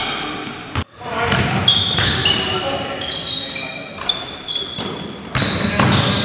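Basketball game on a gym hardwood floor: a ball bouncing and many short, high squeaks of sneakers on the floor. The sound drops out briefly just under a second in.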